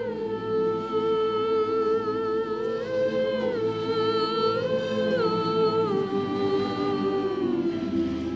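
Mixed choir singing a cappella in slow, long-held chords. The melody steps up and back down a couple of times, then sinks lower over the last two seconds.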